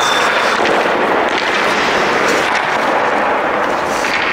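Continuous scraping and clatter of ice hockey skates carving the ice close by, with scattered sharp clicks of stick and puck.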